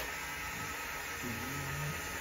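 Portable USB-rechargeable mini blender running steadily while it blends banana pieces in milk, giving an even, steady noise.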